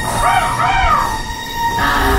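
Eerie dark-ride soundtrack music with a held tone. Two short rising-and-falling cries come in the first second.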